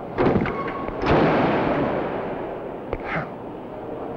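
Spring-loaded landing-gear leg of a full-scale Apollo Lunar Excursion Module mockup swinging out on its own once the release pin is pulled. It slams into its deployed, locked position with one loud clank about a second in, which rings and dies away over about two seconds.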